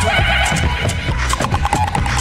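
Live-looped music with a steady beat and bass, over which a high, rapidly wavering vocal sound is made into a handheld microphone in the first second or so, followed by short repeated blips.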